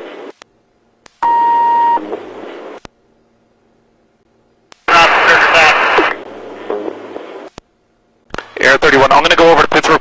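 Police radio channel: a steady beep tone about a second in, then a loud burst of static-like hiss when a transmission keys up around the middle. Garbled radio voice comes in near the end.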